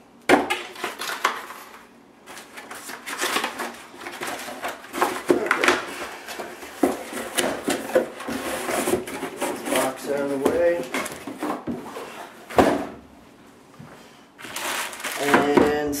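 Cardboard packaging and foam inserts being handled and pulled out of a laptop shipping box: irregular rustling, scraping and knocks of cardboard, with two sharp knocks, one just after the start and one about three-quarters of the way through.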